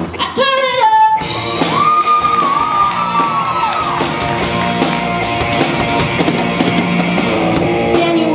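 Live rock band playing: drum kit with regular hits, electric guitar and bass, and a sung vocal line that slides about and then holds a long note.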